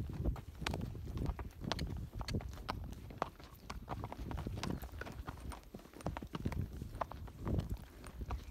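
Tennessee Walking Horse's hooves clip-clopping on a rocky dirt trail at her flat walk, a steady, even run of strikes several times a second.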